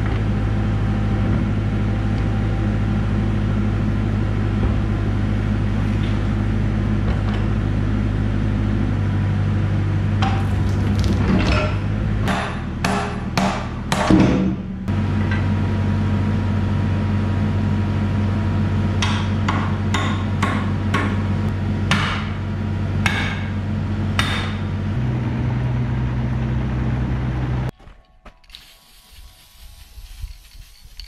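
Excavator diesel engine idling steadily, with two spells of sharp metal knocks; the engine note rises a little near the end, then the sound cuts off.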